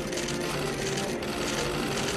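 Many press camera shutters clicking rapidly at once in a dense, continuous clatter, with a few steady tones held beneath; it cuts off suddenly just at the end.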